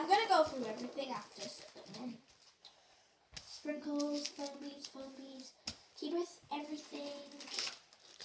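A child's voice: a few quick syllables at first, then after a short pause a run of short held notes, like humming. Light clicks and rustles of plastic sachets being handled on a table are heard between them.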